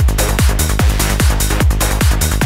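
Psychedelic trance music: a steady four-on-the-floor kick drum, each beat a falling thump, a little over two a second, with a rolling bassline pulsing between the kicks and hi-hats on top.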